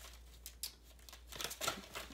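Faint rustles and a few soft clicks of tarot cards being handled, over a low steady hum.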